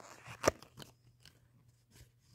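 A small cardboard box being opened by hand: a brief crackle of card, a single sharp snap about half a second in, then a few faint clicks.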